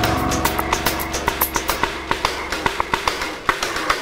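Background music cue from a TV serial's score: a low held bass note under quick, sharp percussive ticks.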